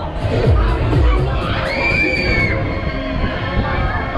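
Loud fairground ride music with a steady beat, over riders shouting, with one long high scream about two seconds in.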